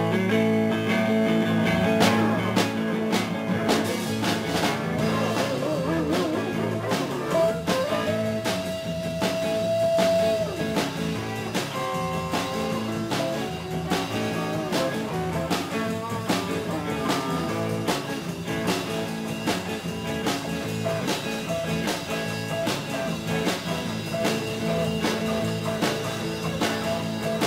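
Live band playing an instrumental passage: electric guitar over bass guitar and drum kit, with one guitar note held for about three seconds a third of the way in.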